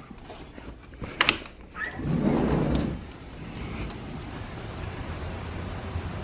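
A sliding glass patio door: a latch clicks about a second in, then the door rolls open on its track, a rumbling noise lasting about a second.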